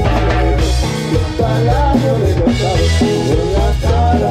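Live cumbia band playing an instrumental passage: an accordion melody over electric bass, drum kit and güiro, with acoustic guitar.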